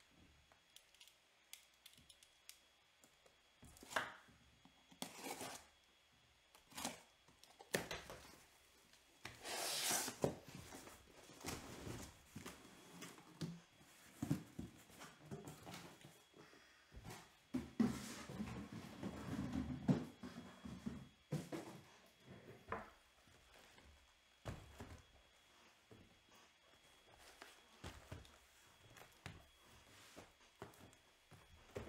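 A sealed cardboard shipping case being cut open and unpacked by hand: a knife slicing packing tape, a longer rasping burst about ten seconds in, and scattered knocks and scrapes of cardboard boxes being lifted out and set down.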